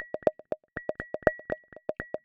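Resonant filters in a software modular synth patch, pinged by triggers so they sit just below self-resonance. Short pitched pings with a sharp start and quick decay come about six a second in an uneven rhythm, some high and some lower.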